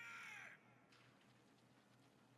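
A voice shouting a short command, the subtitled order "Start opening the gate!", for about the first half second, then near silence.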